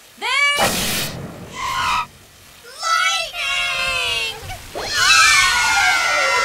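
Cartoon characters' voices crying out in long, high, wavering and falling cries, after a short burst of noise about half a second in.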